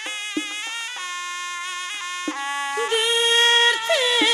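Khorezm xalfa folk music: a sustained instrumental melody with a couple of sharp drum strikes, then a woman's singing voice comes in on a long held note near the end.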